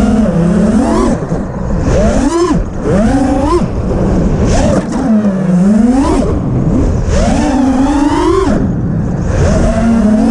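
FPV racing quadcopter's motors and propellers whining, the pitch swooping up and down sharply with each throttle punch and turn.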